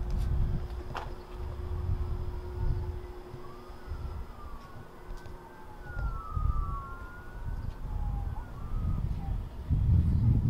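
Faint emergency-vehicle sirens wailing, two of them rising and falling across each other, over a louder, uneven low rumble. A steady low hum is heard in the first few seconds.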